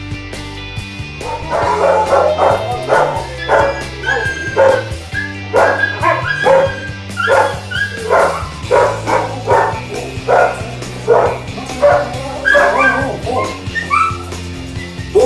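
A dog barking and yipping repeatedly in short, high calls, one or two a second, starting about a second in, over steady background music.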